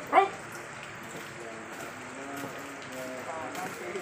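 A man shouts one short, loud drill command just after the start. Fainter voices follow over steady background noise.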